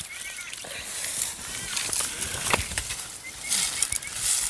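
Birds chirping in short calls in open scrub, with the rustle of long grass and a few sharp twig snaps of someone walking through it.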